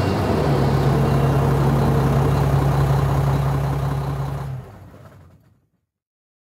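A truck engine runs steadily as a sound effect closing a song, a low even drone with noise over it. It drops off sharply about four and a half seconds in and dies away.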